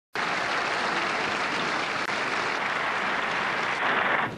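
A large crowd applauding steadily. The applause starts abruptly at the very start, after a moment of dead silence.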